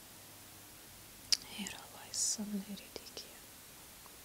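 A woman whispering a few quiet words close to a handheld microphone. There is a sharp mouth click about a second in and a few smaller clicks near the three-second mark.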